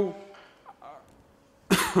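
A man coughs once, a short sharp cough near the end, over quiet room tone with a faint steady hum.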